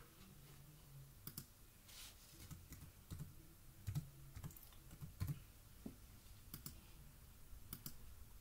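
Faint, irregular clicks of a computer keyboard and mouse as a short web address is typed.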